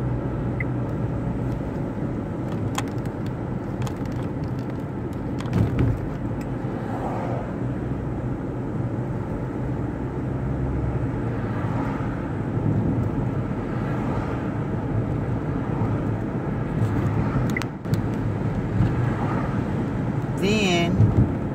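Road noise inside a moving car's cabin: a steady low rumble, with a brief knock about five and a half seconds in.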